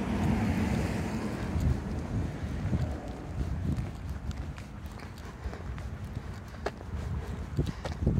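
Wind buffeting a handheld microphone, a low rumble that eases somewhat after about three seconds, with scattered faint clicks.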